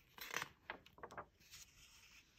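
A picture-book page turned by hand: a few faint paper rustles and slides over about a second and a half.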